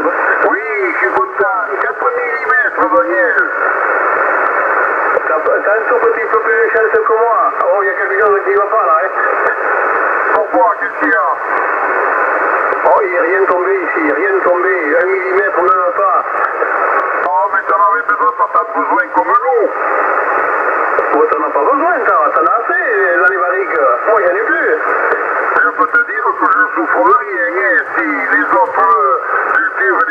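Voices of CB operators received in lower sideband on a Yaesu FT-450 transceiver, heard through its speaker as narrow, telephone-like radio speech over a steady band hiss.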